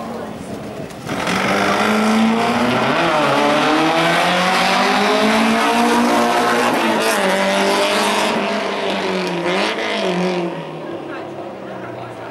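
Alfa Romeo slalom car's engine revving hard, its pitch climbing and dropping several times as the driver works the throttle through the cone chicanes. It gets loud about a second in as the car passes close by, then fades near the end as it pulls away.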